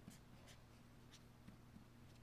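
Faint scratching of a pen writing characters on paper, in a few short light strokes over a low room hum.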